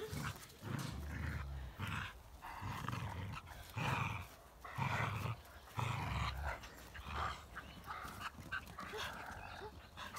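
Two dogs playing tug-of-war over a stick, giving short play growls about once a second.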